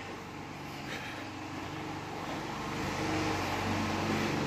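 Steady low mechanical hum, like a motor or engine running, growing a little louder in the last second or so.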